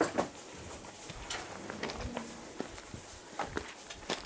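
Scattered light knocks and clicks inside a metal horse trailer as a horse shifts its hooves on the floor and a person moves beside it, with quiet between.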